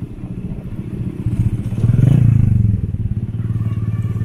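Small motorcycle engine running steadily as the bike rides along, growing louder about two seconds in.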